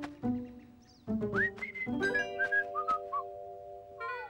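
A cartoon character whistling a jaunty tune: a quick rising swoop about a second in, then a run of short high notes, over light background music with held chords.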